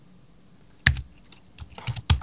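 A few keystrokes on a computer keyboard: one sharp tap about a second in, then several lighter taps near the end.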